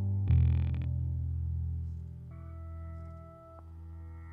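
Live instrumental music from a guitar, contrabass and drum-set trio: a low note rings throughout, a sharp bright attack comes about a quarter second in, and high held tones through effects enter a little past halfway, fading slowly.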